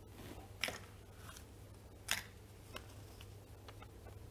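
A plastic draw ball being opened and its paper name slip pulled out and unrolled: a few short crisp clicks and rustles, the two loudest about half a second in and about two seconds in.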